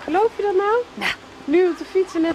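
A woman's voice speaking in short, rather high-pitched phrases with brief pauses between them.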